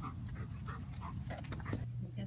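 German Shepherd panting in quick short breaths, about three a second, over a low rumble. A steady low hum comes in suddenly near the end.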